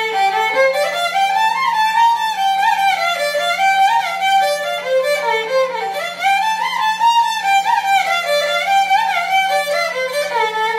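Solo violin played Carnatic style, a continuous bowed melody with frequent slides and ornaments between notes, over a steady low drone tone.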